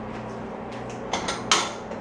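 Wooden kitchen cabinet door opened and dishes taken out: a few light clinks and knocks about a second in, the sharpest about a second and a half in, over a low steady hum.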